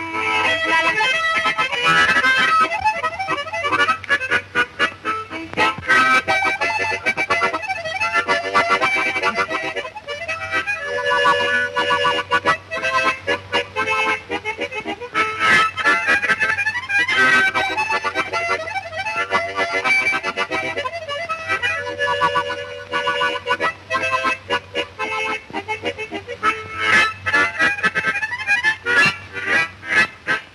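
Harmonica (mouth organ) played solo: a lively tune in rhythmic chords broken by short breaths, over a steady low hum.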